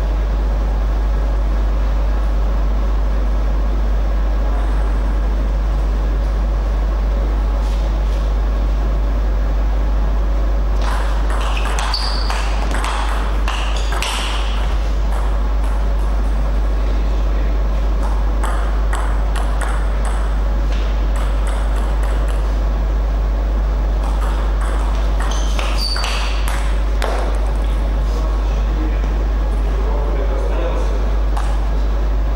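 Table tennis ball clicking off bats and bouncing on the table in two short rallies, one about eleven seconds in and one about twenty-five seconds in. A loud steady low hum runs underneath.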